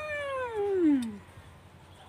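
One long cat meow, its pitch sliding steadily downward until it dies away a little over a second in.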